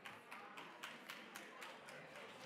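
An audience beginning to applaud: faint hand claps, about three or four a second, growing slightly denser.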